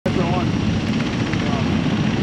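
A loud, steady low rumble with faint men's voices talking over it.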